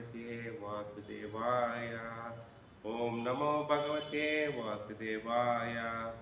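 A man chanting Sanskrit invocation prayers in a steady, sung recitation. He holds each phrase for a couple of seconds, with a short pause for breath about three seconds in.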